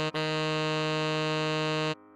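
Synthesized tenor saxophone holding one steady note, written F4 (sounding E-flat below middle C), for nearly two seconds. It begins after a brief gap from the previous note and cuts off sharply near the end.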